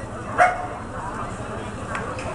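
A dog barks once, short and loud, about half a second in, over the murmur of a crowd of voices.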